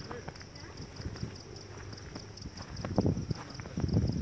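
Insects chirring in a high, steady pulse, about five pulses a second. Under it, footsteps on a stony dirt path and indistinct voices grow louder about three seconds in.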